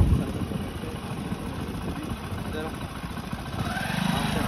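Hero Splendor motorcycle's small single-cylinder engine idling while stopped, with faint voices alongside.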